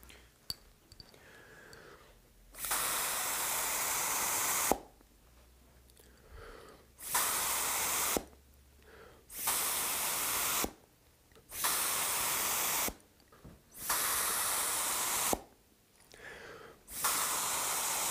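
Mouth atomizer blown to spray watercolor, making six steady hisses of one to two seconds each with short quiet pauses between them.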